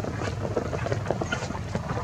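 Wind rumbling low and steady on the microphone, with scattered light clicks and ticks on top.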